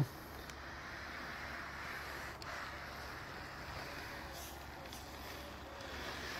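Faint, steady rubbing of a plastic bag of warm water being slid across a frosted car windscreen, with a low steady hum underneath.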